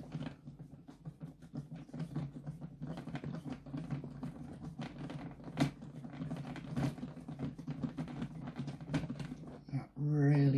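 Light, irregular clicks and ticks of small metal parts as a wheel nut is worked by hand onto the axle of a 1/14-scale RC trailer's aluminium wheel, over a steady low hum.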